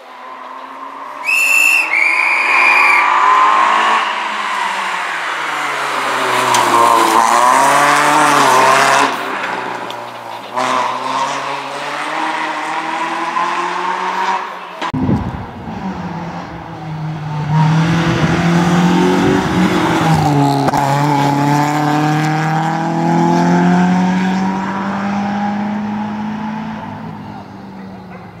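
Peugeot 106 rally car's engine revving hard under full throttle, its pitch climbing and dropping repeatedly with gear changes and braking for bends. The sound changes abruptly about halfway, then the engine revs on and fades slowly toward the end.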